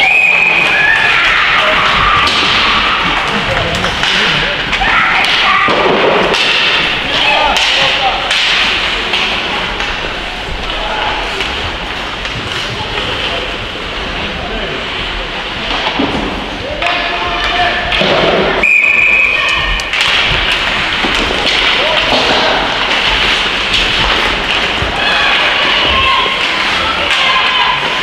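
Ice hockey game sounds in an indoor rink: repeated thuds and clacks of pucks, sticks and players against the boards and ice, under the voices of players and spectators. Short whistle blasts come near the start and about three-quarters of the way through.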